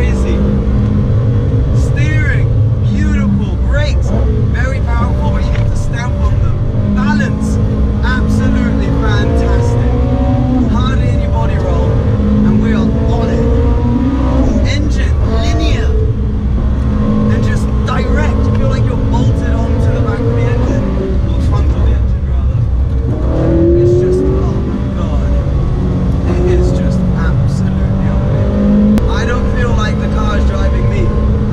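Ferrari 458 Spider's V8 heard from inside the cabin, its pitch rising and falling repeatedly as it is driven hard around a track, with voices over it.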